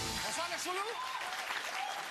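Studio audience applauding and cheering, with high whoops rising and falling over the clapping. The band's theme music cuts off just after the start.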